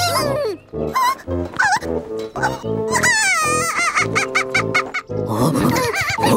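Cartoon soundtrack: bouncy, staccato background music mixed with the characters' short, wordless squeaky vocal calls, and a wavering falling sound effect about three seconds in.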